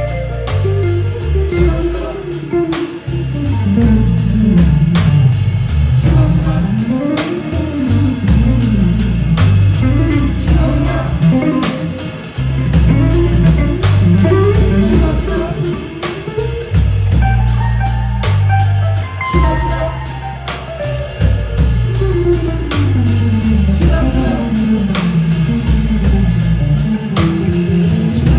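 Live band playing a slow song: gliding electric guitar lead lines over bass guitar and a steady drum beat.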